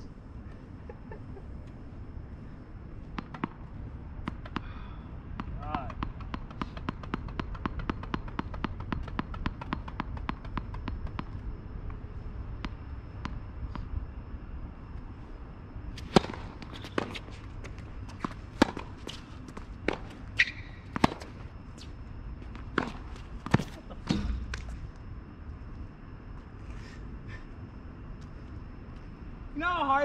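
A tennis rally: a ball struck back and forth by rackets and bouncing on a hard court, about a dozen sharp separate pops over eight seconds in the second half. Earlier, a quick run of light, rapid ticks.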